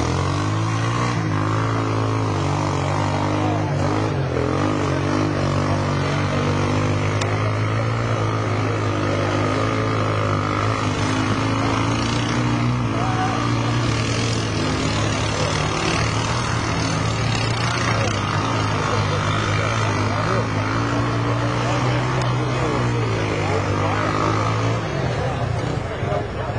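Quad (ATV) engine running hard under load, its pitch wavering up and down as the machine churns through deep mud. The engine drone stops near the end.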